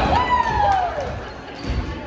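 Basketball bouncing on a hardwood gym floor, a few dribbles, with a drawn-out falling vocal sound from onlookers near the start.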